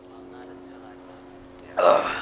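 Faint steady hum, then near the end a sudden loud breathy groan from a man sitting in an ice bath, straining against the cold.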